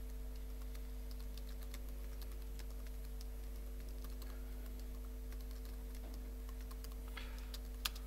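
Typing on a computer keyboard: a run of light, irregular key clicks, with one sharper click near the end, over a steady low electrical hum.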